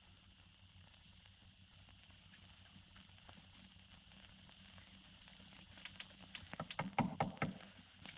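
Knocking at a door: a quick run of raps starting about six seconds in and ending a moment before the door is answered, over a faint steady hiss.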